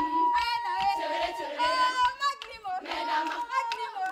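Girls' choir singing a Marakwet folk song, a high note held for about a second three times over the other voices.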